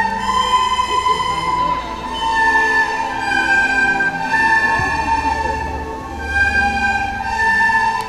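A class of children playing plastic recorders together: a slow tune of long held notes that move between a few pitches every second or so.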